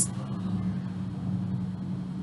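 A steady low hum of background noise during a pause in speech.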